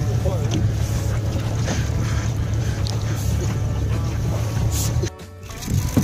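Boat motor running at idle with a steady low rumble, under background music; the rumble cuts off abruptly about five seconds in.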